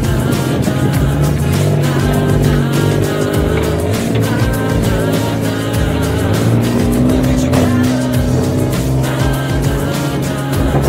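A motorcycle engine running steadily while riding a rough dirt track, with music playing over it.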